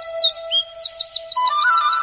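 Bird chirps, a quick run of repeated whistled notes in the second half, over sustained background music notes. The music's notes step up in pitch near the end.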